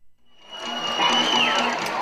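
Audience cheering and clapping, swelling in about half a second in, with a high whistle that holds and then slides down in pitch midway.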